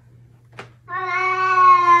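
Domestic cat giving a long, drawn-out meow at a steady pitch, starting about a second in and lasting well over a second. A brief faint click comes just before it.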